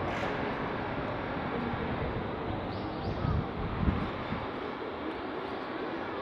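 Steady city traffic noise outdoors, with two low rumbling swells a little past the middle.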